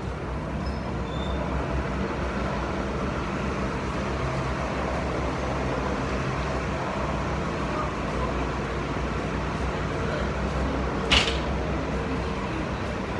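Articulated Nova Bus city bus passing and pulling away, a steady low drone of engine and road noise mixed with street traffic. A single sharp click about a second before the end.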